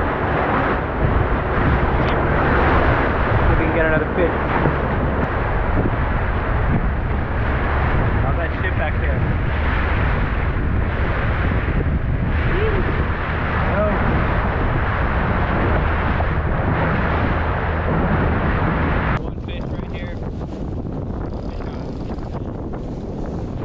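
A small boat's outboard motor runs steadily under way while wind buffets the microphone and spray and chop rush past the hull. About nineteen seconds in it cuts to a quieter stretch of wind and sea noise.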